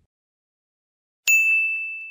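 Silence, then a single bright bell-like ding just over a second in, one high ringing tone that slowly fades away.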